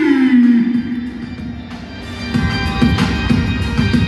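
Stadium PA lineup music, opening with the tail of an announcer's drawn-out call of a player's name, falling in pitch. The music thins out, then a steady beat comes back in a little past halfway.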